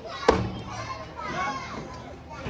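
A single thud on a metal-framed step platform about a quarter of a second in, over faint children's voices.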